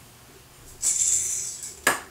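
A spinning yo-yo whirring with a high hiss as it swings out and around on its string, fading away, then one sharp smack near the end as it returns into the hand.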